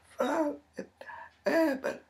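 A woman's voice uttering short syllables in four quick bursts, the last the loudest.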